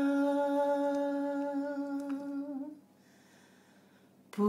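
A woman's unaccompanied voice holding one long, steady note of a traditional Galician song, the end of a phrase, which fades and stops a little under three seconds in.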